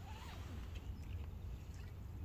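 Outdoor lakeshore ambience: a steady, uneven low rumble with faint, scattered small-bird chirps and one short call near the start that rises and falls.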